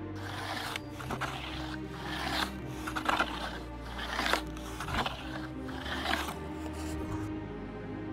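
Scraping strokes of a hand tool working wood, about eleven in a row at a steady working pace, stopping about seven seconds in. Background music plays under them.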